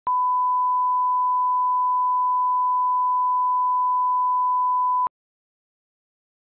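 Steady 1 kHz broadcast line-up test tone that accompanies colour bars and serves as the audio reference level. It is one unbroken pure tone lasting about five seconds and cuts off suddenly.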